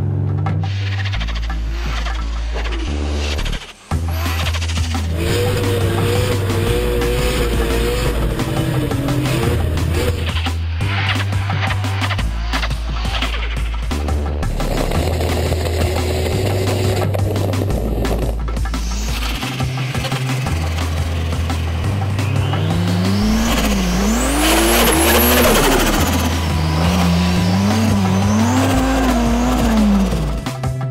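A Toyota Supra drift car's engine revving and its tyres squealing as it slides on snow and ice, under background music with a steady bass line. The engine pitch rises and falls repeatedly in the last several seconds.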